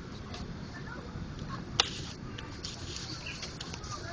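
Steady background ambience with faint chirps and one sharp click a little under two seconds in.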